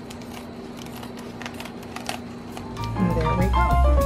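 Scissors trimming the edge of a plastic poultry shrink bag, a few short sharp snips. About three seconds in, loud instrumental music starts.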